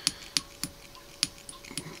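Fly-tying bobbin and thread being wound around a hook in a vise: a few light, irregular clicks and ticks, the two sharpest about a third of a second and just over a second in, over a faint steady hum.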